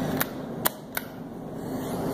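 Three short sharp clicks within about a second, over a faint steady low hum.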